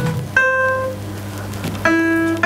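Single piano notes played from a laptop as bananas wired to a Makey Makey controller are touched: one note about a third of a second in and a lower one near the end, over a steady low hum.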